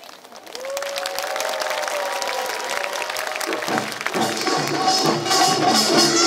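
Audience applause and cheering, loud and crackling. About four seconds in, a Korean pungmul folk band's music comes in: a reedy, bagpipe-like wind instrument with drums.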